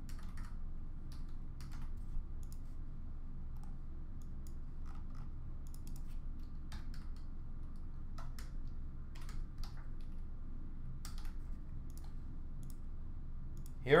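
Computer keyboard typing and clicks, sparse and irregular, over a faint steady low hum.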